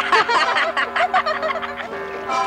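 Cartoon soundtrack: a held music chord with rapid, choppy vocal sounds over it, which die away near the end.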